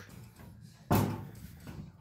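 A single sharp knock about a second in, from hands working the motorcycle's controls as the choke is set before a cold start. The engine is not yet running.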